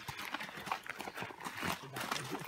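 Horses walking past on a packed dirt trail, their hooves clip-clopping in an irregular string of soft knocks.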